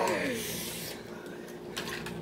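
Clear plastic snack packaging crinkling and rustling in the hands as it is opened and handled, with a few light clicks, just after a laugh trails off.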